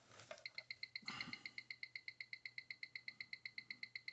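Seiko 8L35 automatic movement ticking at its high beat of 28,800 beats per hour, an even eight ticks a second, picked up and amplified by a timegrapher. The ticks start about half a second in, with a brief rustle of handling around a second in. The rate they give is 11 seconds a day fast, with 290° amplitude and 0.2 ms beat error.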